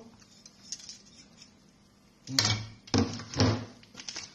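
Kitchen dishes and cookware being handled: quiet with faint ticks at first, then a few sharp clattering knocks over the last second and a half.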